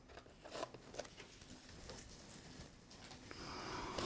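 Faint handling of a small cardboard product box on a wooden desk: a few light taps and rustles, then a soft rustling scrape that grows near the end as the box is turned and set down.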